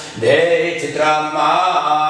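A man chanting a Sanskrit Vedic mantra in a drawn-out, sung recitation, two long phrases.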